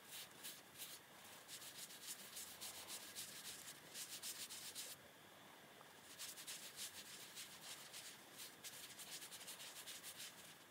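Faint, fast rubbing of nylon tights over the dry, hard surface of a dorodango mud ball, buffing it to a shine in the final polishing stage. The strokes stop for about a second halfway through, then carry on.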